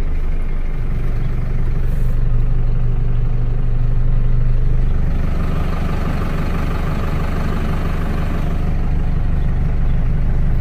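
Box truck's engine running steadily at low revs, heard from inside the cab, with a low, even hum.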